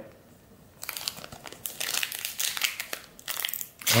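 Plastic wrapper of a Panini Mosaic basketball card pack crinkling and tearing as it is pulled open by hand. The crackling starts about a second in and runs in uneven spurts with a short lull near the end.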